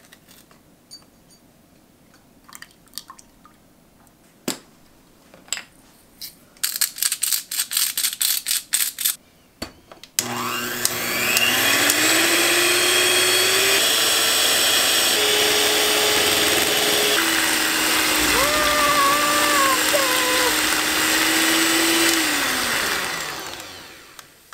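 Electric hand mixer whipping heavy cream in a glass measuring cup to make butter. The motor starts with a rising whine about ten seconds in, runs steadily with a step up and then down in speed, and winds down near the end. Before it starts there are a few seconds of quick clicks and rattles.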